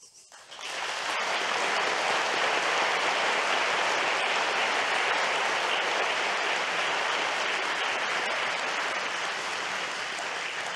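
Audience applauding: the clapping builds within the first second, holds steady, and eases slightly near the end.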